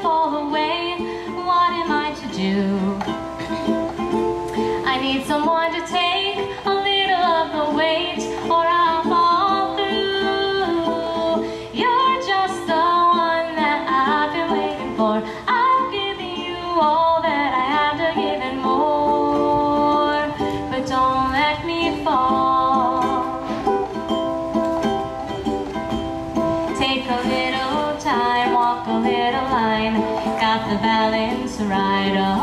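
A woman singing a pop song live, accompanied by a ukulele and an electric keyboard.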